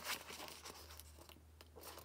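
Paper pages of a picture book rustling and crackling as the book is handled, in a series of irregular soft crackles and small clicks.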